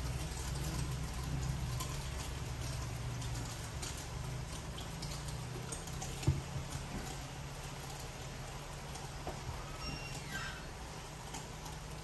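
Water dripping and splashing into a shampoo basin from wet hair, with hands rubbing and scrubbing the wet hair and scattered small clicks. A low hum is heavier in the first few seconds, and a single sharp knock comes about six seconds in.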